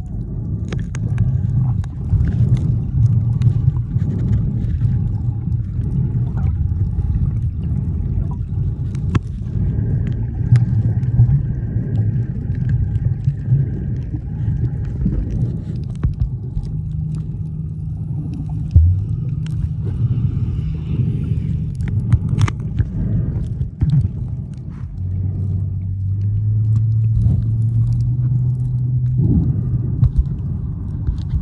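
Underwater sound picked up by a submerged camera: a dense, muffled low rumble with a steady droning hum that steps up in pitch near the end, and scattered clicks and crackles throughout.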